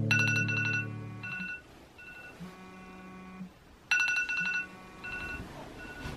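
Smartphone ringing with a high, rapidly pulsing tone: a loud burst at the start, softer repeats, then another loud burst about four seconds in.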